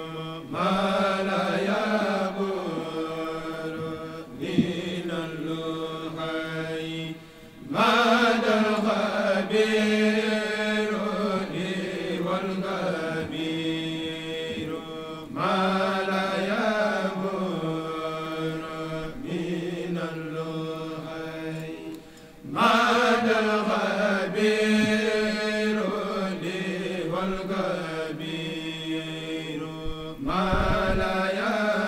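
A kourel of men chanting a Mouride religious khassida in unison through microphones, in long held phrases. The phrases begin again about every seven and a half seconds, with two brief breaks before louder entries about a quarter and three-quarters of the way through.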